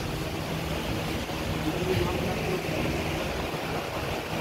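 Faint, indistinct voices over a steady low background hum.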